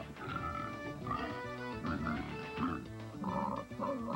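Domestic pigs grunting and oinking in short repeated bursts over background music.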